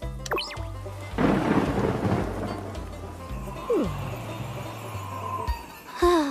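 Cartoon storm sound effect: a rumble of thunder breaks about a second in and fades away over several seconds with a rain-like hiss, over background music with a steady bass line. A short falling sound passes near the middle.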